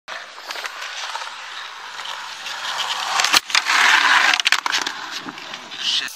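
Skateboard wheels rolling over concrete. A sharp board clack comes about three and a half seconds in, followed by a louder rush of noise, then a few more clacks around four and a half seconds.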